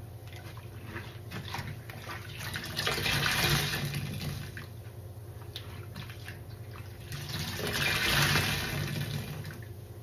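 Sponges being squeezed and pressed in a basin of sudsy rinse water, the water squelching and gushing out of the foam. There are two louder swells of gushing water, one about three seconds in and one about eight seconds in.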